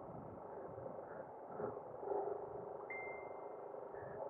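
Faint, muffled steady hum of a motorcycle engine at low riding speed. A short high beep sounds about three seconds in.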